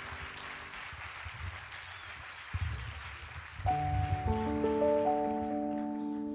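Audience applause fading out, then a piano begins an introduction about three and a half seconds in, playing sustained notes and chords.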